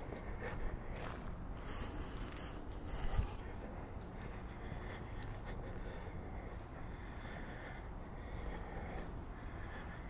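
A walker's breathing, with soft puffs of breath about two to three seconds in, over low rustle and footfalls on a dirt forest trail, picked up by a camera's built-in microphones.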